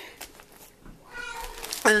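A faint, short high-pitched call, a bit more than a second in, amid quiet handling of grocery packages.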